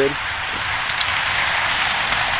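A steady hiss of background noise, even and unchanging, with no engine or other distinct sound standing out.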